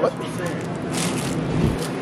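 Brief rustling and crinkling handling noises, a crinkle about a second in and another with a soft low thud a little later, over steady supermarket background noise.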